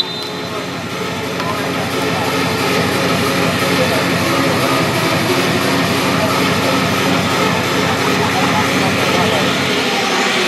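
A steady, loud drone like an engine, mixed with indistinct voices.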